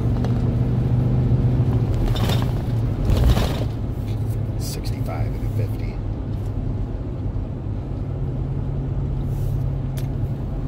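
Steady low engine and road drone inside a moving car's cabin, with two short, louder rushes of noise about two and three seconds in.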